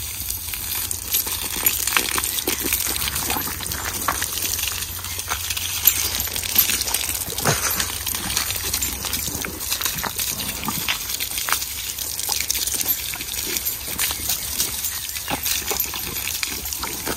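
Water from a garden hose spraying onto a horse's legs and the wet ground: a steady hiss with frequent small splashes.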